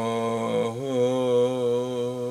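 A man's low voice chanting a long, held wordless note with a slight waver in pitch, in a Yemeni-style Hebrew chant; the note breaks off briefly about two thirds of a second in and a second held note follows.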